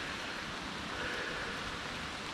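Rain falling, a steady even hiss.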